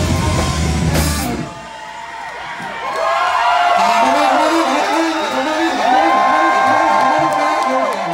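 Live rock band playing at full volume, then thinning out after a cymbal crash about a second in. From about three seconds a saxophone plays bending lead lines over a bouncing bass line, with whoops from the crowd.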